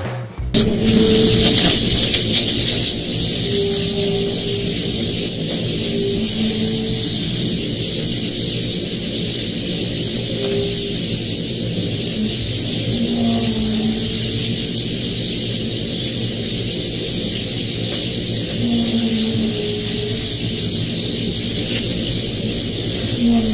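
Phone recording of a loud, steady hissing noise with short, low, wavering tones that sound every few seconds, the kind of unexplained sky noise that is reported as trumpet-like sounds.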